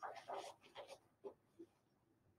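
Faint rustling of a cloth triangular bandage being pulled around a leg splint and tightened, busiest in the first half second, then a few brief soft rustles.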